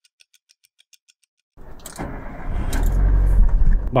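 Faint rapid ticking over near silence for about a second and a half, then a low rumbling noise comes in and grows louder.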